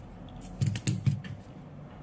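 A few short, sharp clicks, clustered about half a second to a second in, as crocodile clip leads from a bench DC power supply are clipped onto a phone circuit board's battery connector.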